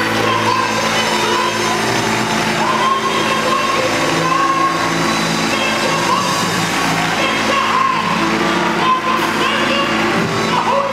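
Live gospel song: a woman singing held, wavering notes into a microphone over steady accompaniment, with the congregation clapping along and calling out.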